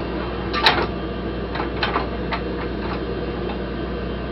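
Space station cabin ventilation humming steadily, with irregular short clicks and knocks from the Robonaut packaging and its fasteners being handled. The sharpest click comes just under a second in, and a few more follow.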